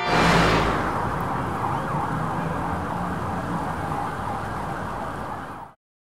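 Night-time city street ambience: a steady traffic rumble and hiss with a faint distant siren wailing. It starts loudly as the music ends and cuts off abruptly near the end.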